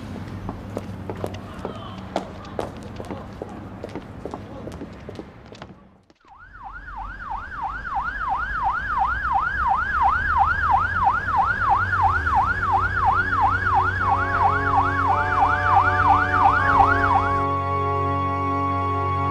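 Footsteps on paving for the first few seconds. Then, after a short break, a police car siren in a fast rising-and-falling yelp, about three cycles a second. It cuts off just before the end as soft music takes over.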